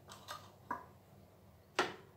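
A few faint short clicks, then one sharper, louder tap near the end.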